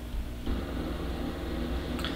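Steady low machine hum, fuller and louder from about half a second in.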